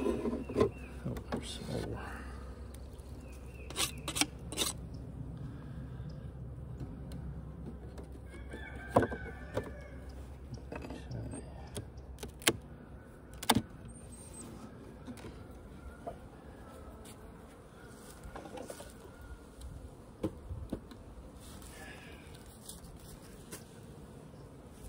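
Several sharp knocks and scrapes of a metal hive tool against the wooden frames of an open beehive, with a rooster crowing around nine seconds in.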